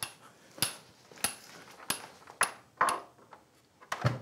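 A series of about seven sharp clicks, roughly one every half second and unevenly spaced, each with a short, high metallic ring.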